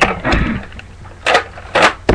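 Nerf Recon CS-6 spring-powered blaster: a sharp snap as it is dry-fired, then its priming slide is pulled back and pushed forward to re-cock it. This makes two short rasping strokes about half a second apart near the end.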